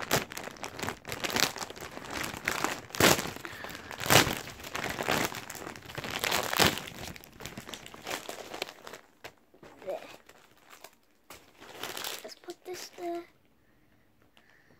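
Plastic wrapping of a trading card starter pack crinkling and crackling as it is handled and torn open, dense and loud for the first eight seconds, then fewer, quieter rustles.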